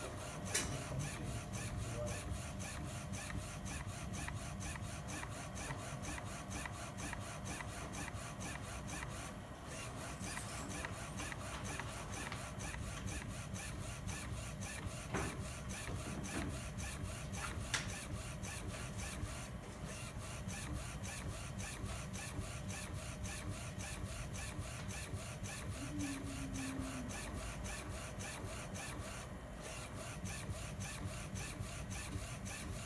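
UV flatbed printer running a print job, its printhead carriage and curing lamp shuttling across the bed. It makes a steady mechanical running noise with a fast, fine ticking, dipping briefly about every ten seconds, with a few sharp clicks.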